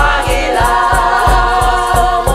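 Devotional song: several voices singing held notes together in harmony over a steady low drum beat of about three pulses a second, with a rhythmic high rattle.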